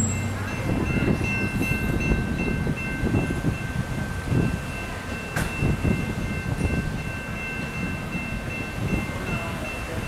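Grade-crossing warning bell ringing steadily over the low rumble of a slow-moving freight train.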